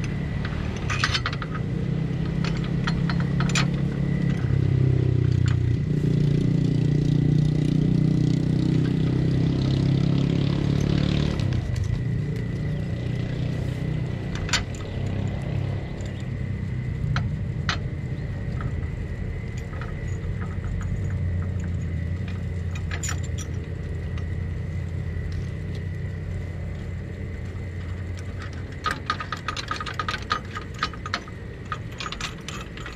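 An engine runs steadily close by, a pitched hum that is a little louder and shifts pitch between about four and eleven seconds in. Scattered light metal clicks and clinks come from the jack's bracket hardware being handled, more of them near the end.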